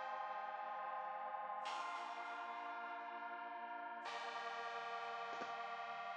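Sustained software-synth chords from the AAS Player plugin on a Vox preset, playing a chord progression. Each chord rings on, and a new one comes in about a third of the way in and again about two-thirds in.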